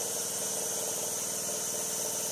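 A motor or engine running steadily at an even speed, a constant hum.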